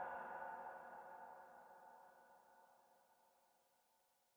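Echoing tail of a preacher's voice dying away, its ringing tones fading out to silence about three and a half seconds in.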